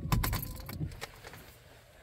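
A quick run of small clinks and rattles of hard objects being handled in about the first second, dying away to quiet.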